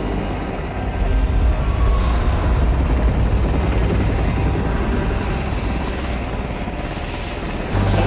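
Helicopter flying overhead at night, a steady rotor and engine noise.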